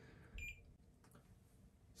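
A single short, faint electronic beep from the Loadrite L3180 loader-scale indicator as one of its keys is pressed, about half a second in; otherwise near silence.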